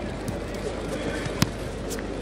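Indistinct crowd chatter and murmur of a large sports hall, with a single sharp knock about one and a half seconds in.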